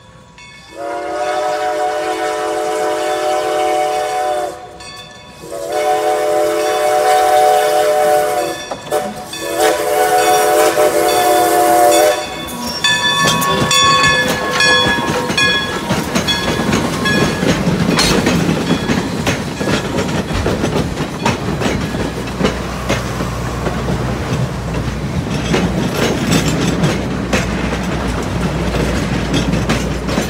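New Hope & Ivyland No. 40, a 2-8-0 steam locomotive, sounds its chime whistle in three long blasts, over the steady ringing of the grade-crossing warning bell. From about 13 s the engine passes close, and its passenger coaches roll by with a rattling clatter of wheels over the rail joints and a low rumble.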